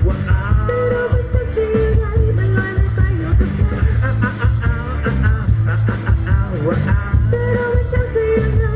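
Live pop-rock band playing an upbeat dance number with keyboard and guitar, a steady beat, heavy bass and a woman singing lead.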